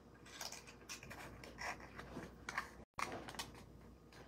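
Faint, irregular crinkling and rustling of cardstock being folded by hand as the flaps of a small glued box are tucked in, with a brief dropout to silence about three seconds in.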